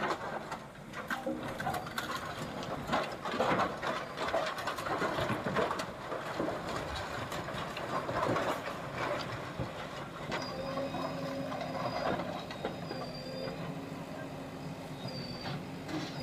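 A JCB backhoe loader's engine running while it demolishes houses, with irregular knocks and clattering of breaking wood and sheet metal. About ten seconds in, a steadier machine hum with a faint high whine takes over.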